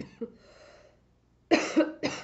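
A woman coughing: a couple of small coughs and a breathy exhale at the start, then two loud coughs in quick succession about a second and a half in.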